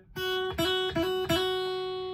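Thinline Telecaster-style electric guitar picked clean, single notes: about four picks in the first second and a half on the same note, which rings on and fades. The note is the F sharp, the major second of the E minor scale.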